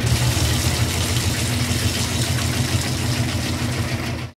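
A steady engine-like motor sound with a low rumble and hiss, running evenly.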